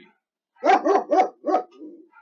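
A dog barking indoors: a quick run of about four barks starting about half a second in, then a softer one near the end.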